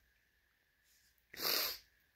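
A crying woman gives one short, sharp sniff through the nose about a second and a half in, after a quiet pause.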